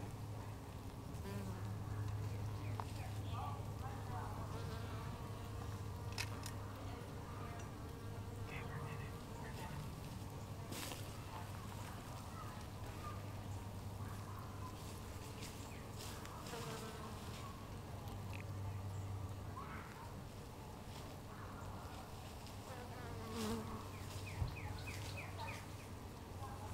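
Faint, steady low hum of a honeybee colony in an open hive, subdued as the bees hush in the darkness of a solar eclipse.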